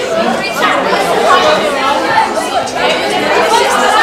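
Many children's voices chattering and calling out over one another, none standing out as a single speaker.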